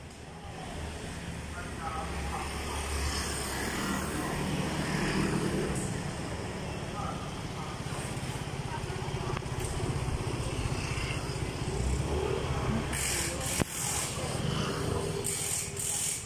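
Motor scooters passing close by on a city street over steady traffic noise, with a single sharp click a little past the middle.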